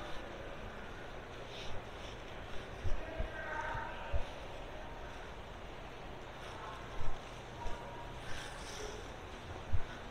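Indoor room tone: a steady low hum and hiss, broken by a handful of short, dull low thumps, with faint voices far off.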